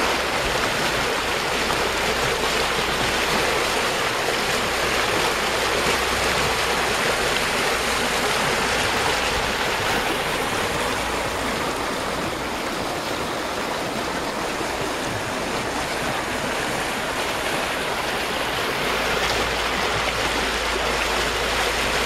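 Rapids on the Vizla river at spring flood level: water pouring over low dolomite ledges in a steady, even rush.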